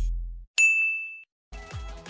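A single bright ding sound effect for an on-screen title transition, ringing for about half a second. Background music fades out before it and starts again near the end.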